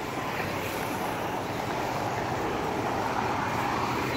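Steady rushing outdoor noise that swells slightly toward the end.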